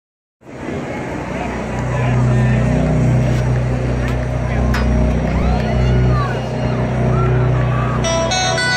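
A steady low engine drone from race cars running at low speed out of sight, with a crowd chattering.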